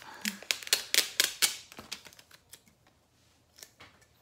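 Sticker label being picked at and peeled off, a stubborn label that does not come away easily: a quick run of sharp, crackly ticks for about two seconds, then only a few faint handling ticks.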